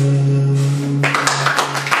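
The final held note of a Turkish folk song (türkü) sung to bağlama, a long-necked Turkish lute, stopping about a second in; scattered hand clapping then takes over.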